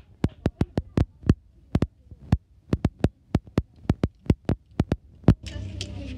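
A marble clicking and clattering down a track built of wooden craft sticks: a long run of sharp ticks at an uneven pace, about three to five a second, with one loud knock about five seconds in.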